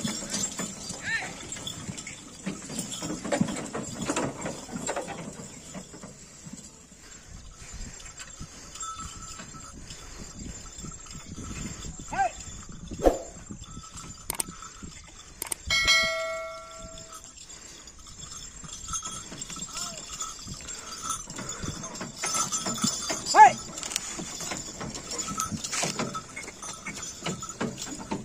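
Ongole bullocks hauling a heavily loaded cart over field stubble: scattered hoof steps and knocks and rattles from the cart. About sixteen seconds in, a bell rings once.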